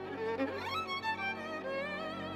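Background instrumental music: a bowed string melody with vibrato, sliding quickly upward about half a second in.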